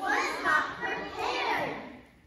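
Several young children's voices speaking together, their words overlapping and unclear.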